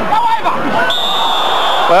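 Stadium crowd noise with a referee's whistle blown about a second in as one long, steady blast.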